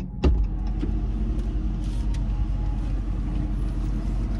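Car idling steadily, heard from inside the cabin, with a knock about a quarter second in.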